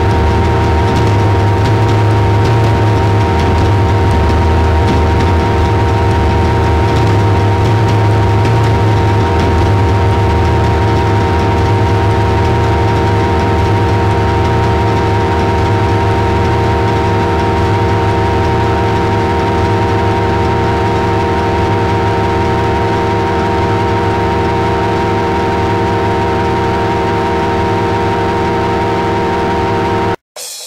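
Noise music: a loud, unchanging drone of many held tones layered over a deep, engine-like rumble and hiss.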